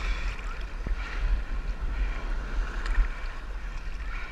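Wind rumbling on the microphone over water sloshing and lapping around a camera right at the sea surface.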